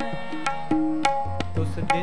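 Tabla played in kirtan, sharp strokes on the small drum with a deep bass stroke from the larger drum about one and a half seconds in, over the steady held notes of a harmonium.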